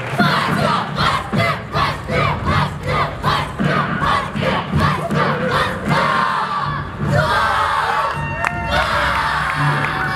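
A group of children shouting martial-arts kiai in unison, in quick rhythmic bursts of about three a second with each strike of their routine. After about six seconds this gives way to a looser mix of many voices shouting and cheering.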